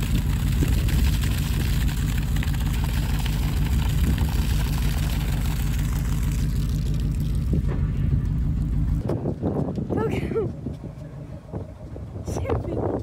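A steady low engine rumble with water from a hose splashing onto soil. Both cut off abruptly about nine seconds in, and a short voice-like call follows about a second later.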